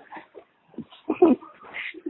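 Brief, quiet vocal sounds: a few short pitched cries and breathy noises, broken up rather than steady.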